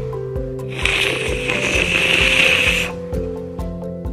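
Background music with a steady beat. Over it, starting about a second in and lasting about two seconds, comes a breathy hiss of a child blowing a soap bubble through a cut squeeze-bottle cap.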